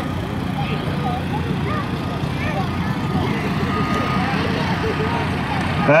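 Heavy diesel equipment running steadily: a Caterpillar hydraulic excavator working as it lifts a wrecked car and loads it into an articulated dump truck, with faint voices in the background.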